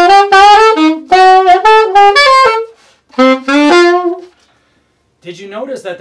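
Saxophone playing short jazz eighth-note phrases, three runs in the first four seconds, with some notes accented by pushing the jaw forward so they pop out of the line. The playing stops a little past four seconds, and a man starts talking near the end.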